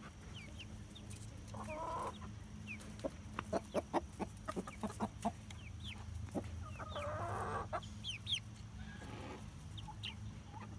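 Domestic hens clucking, with two longer clucking calls and a quick run of sharp taps in the middle. Short high chirps are scattered through it.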